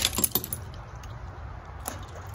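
Steel foothold traps and their chains clinking and jangling as they are handled and lowered into a pot of water, with a few sharp clinks near the start and another just before the end, over a low steady rumble.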